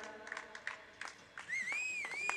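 A person whistling one clear note that slides upward and holds high, starting about one and a half seconds in, over scattered light clicks and knocks.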